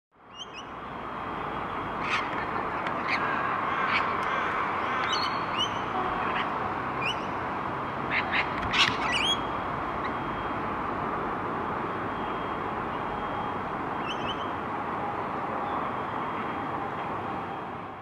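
Birds calling in short, sharp calls and squawks over a steady outdoor background noise. The calls come several times in the first half and once more later on.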